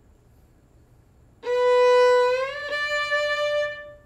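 A single bowed violin note on the A string: a B natural starting about a second and a half in, then a smooth audible slide up to a D natural as the first finger shifts from first to third position. The D is held until just before the end.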